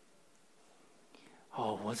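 Near silence, just room tone, for about a second and a half, then a man starts speaking Mandarin.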